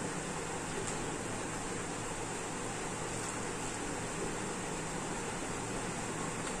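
Steady background hiss like a fan or air conditioner running, with a few faint light ticks as stiff paper card is handled.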